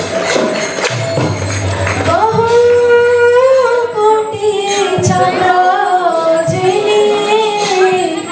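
Devotional kirtan singing: a voice holds a long, slowly gliding melodic line over jingling percussion. Rhythmic percussion strokes over a low drone lead into it in the first two seconds.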